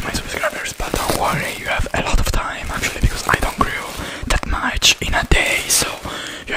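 Close-miked whispering and mouth sounds, mixed with a clear plastic bag of packing material being crinkled against the microphone, with sharp crackles throughout.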